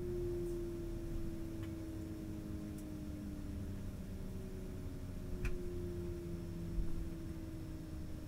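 Rolls-Royce AE 3007 turbofan of an Embraer ERJ-135 winding down after shutdown, heard from inside the cabin: a steady whine sliding slowly down in pitch, with a second falling whine taking over about halfway, over a low rumble and a faint steady hum.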